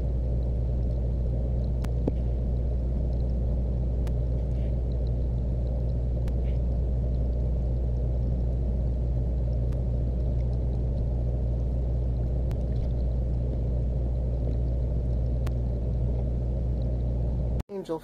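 Steady, muffled low rumble with a low hum, the sound of aquarium water picked up by a camera in a waterproof housing submerged in the tank, with a few faint clicks; it cuts off suddenly near the end.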